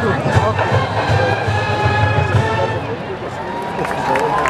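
Marching band brass and drums playing a held chord that fades near the end, mixed with crowd chatter in the stands.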